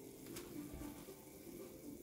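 Faint bubbling of water at a rolling boil in a small saucepan.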